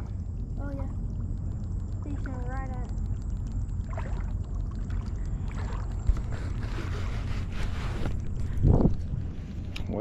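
Shallow water swishing and sloshing around a wader, over a steady low rumble of wind on the microphone, with a few short voice sounds and a louder one near the end.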